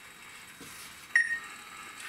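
A single short electronic beep a little over a second in, over quiet room tone.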